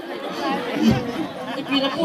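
Speech: men talking into a stage microphone, with other voices chattering over them.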